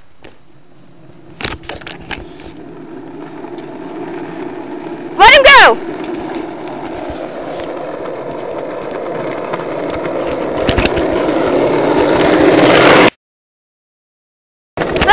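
Small wheels of a pushed go-kart rolling on asphalt, the rumble swelling steadily louder as the kart nears, with a few knocks. A child's loud shout about five seconds in; the sound cuts off suddenly about a second before the end.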